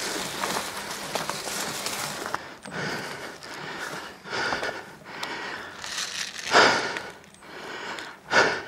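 Brushing through dense pine undergrowth, with rustling branches and small twig clicks for about two seconds. After that comes a person's heavy breathing close to the microphone, roughly one breath a second, the loudest near the end.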